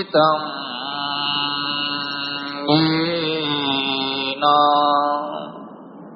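A single voice chanting a Sanskrit invocation to the guru, drawn out in slow, long held notes. Three sustained phrases follow one another, and the last fades out about five seconds in.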